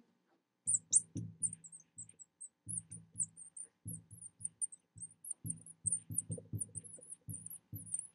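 Marker squeaking across a glass lightboard as a line of words is written: a quick run of short, high squeaks, each stroke with a soft low knock of the tip on the glass.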